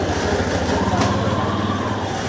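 A small motor vehicle's engine running steadily with a rapid, even chugging.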